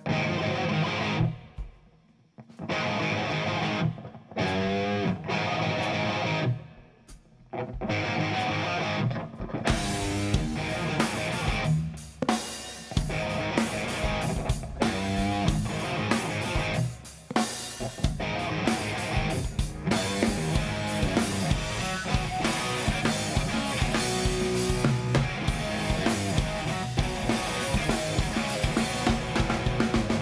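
Electric guitar through a Marshall amp playing chords in short bursts separated by pauses, with some sliding pitch. About ten seconds in the drum kit comes in and guitar and drums play a rock song together.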